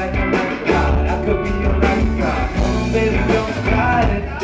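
Live band music: a male lead vocal sung into a microphone over drums and a heavy, steady low end.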